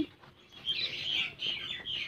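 Small birds chirping: a run of short, high twittering calls starting about half a second in.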